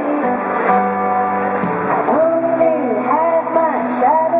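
A woman singing a light, breezy song into a microphone while strumming her own acoustic guitar, with the vocal line sliding between held notes in the second half.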